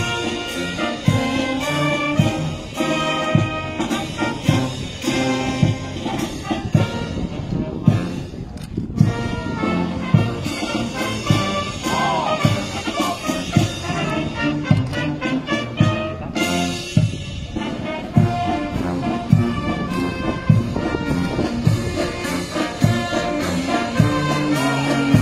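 Military marching band playing a march: brass with a steady bass-drum beat.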